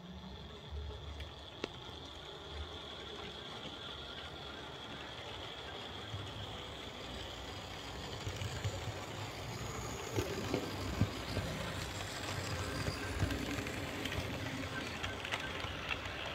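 H0 model train running past: the Märklin E 424 electric locomotive, which has no sound module, whirring with a high whine, and its coaches' wheels rolling on the track, growing louder as it nears, with a run of clicks and rattles in the second half.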